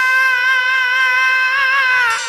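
Jhumur folk music: a single high melody note with rich overtones, held steadily for about two seconds after sliding up into it, with a brief waver near the end.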